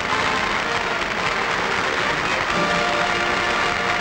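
Studio audience applauding while music plays, with sustained chords that change about two and a half seconds in.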